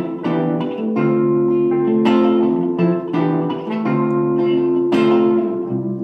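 Instrumental passage of a slow song: guitar chords strummed about once a second and left to ring, with a keyboard playing along underneath.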